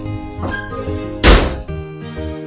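Background film music with soft piano-like notes, and one loud thump about two-thirds of the way in: a door being shut.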